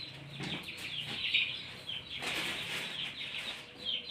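Birds chirping repeatedly in short, falling calls in the background, with rustling of a plastic bag and vegetables being handled.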